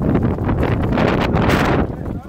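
Sandstorm wind blowing hard across a phone's microphone: a loud, rough rumble that rises and falls with the gusts.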